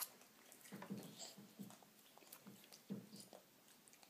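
Faint mouth sounds of a baby chewing bacon and sucking on its fingers, with a few short, soft low sounds about a second in and again near three seconds.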